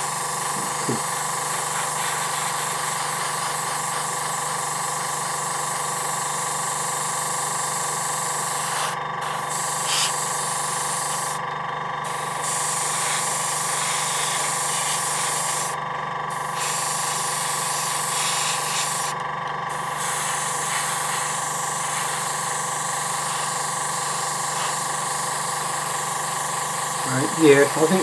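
Airbrush spraying paint in a steady hiss that cuts out briefly four times as the trigger is let off, over a steady hum from the air compressor. The airbrush is struggling to spray, with the air pressure slightly too low for the green paint.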